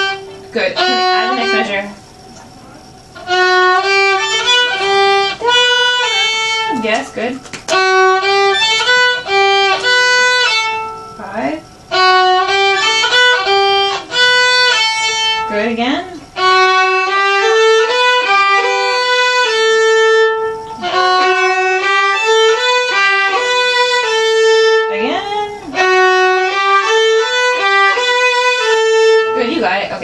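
Two violins, a student's and her teacher's, play a short beginner exercise phrase together in an even rhythm. The phrase is repeated over and over, with a brief break between repeats, as a practice drill.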